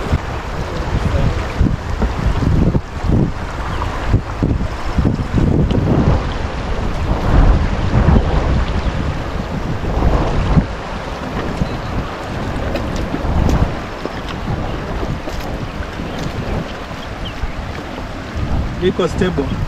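Wind buffeting the microphone in uneven gusts, over the rush of fast-flowing floodwater.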